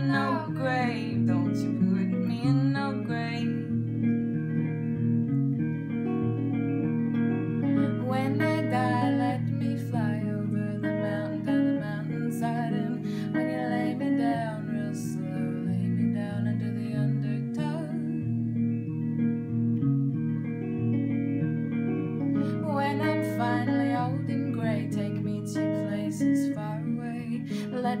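Strummed guitar accompanying a woman singing a slow folk song. Her sung phrases come and go over the continuing guitar.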